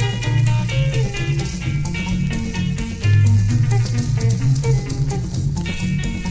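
Instrumental passage of an Angolan rumba: guitars picking a repeating melodic figure over a steady bass line, with a shaker keeping an even beat.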